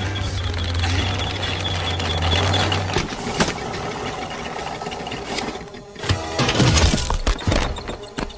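Film soundtrack: music over the rattle and clatter of a cartoon ant's hand-built wooden harvesting machine as it is rushed along. A steady low drone stops abruptly about three seconds in. Near the end the sound drops briefly, then several sharp hits follow.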